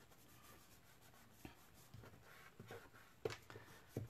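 Near silence with faint rustling and a few light taps of paper card being handled, slid and pressed down on the tabletop as card layers are positioned together.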